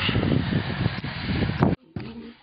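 Wind rumbling and buffeting on the microphone, with rustling, cutting off suddenly near the end.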